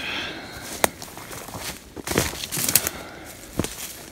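Footsteps through dry grass and brush, with irregular crunching and sharp snaps of dry stalks and twigs underfoot.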